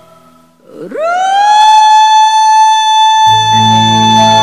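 A female singer's voice sweeps upward into one long, high note held steady without vibrato. About three seconds in, the pops orchestra comes in beneath it with low brass and bass notes.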